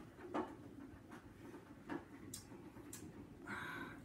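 A man sipping a cocktail from a glass: faint sips and swallows, and a breathy exhale near the end.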